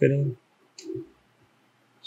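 A single short click of a computer mouse, about a second in, after a spoken word.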